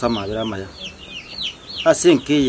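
Birds chirping fast: a steady run of short, high calls, each falling in pitch, about five a second.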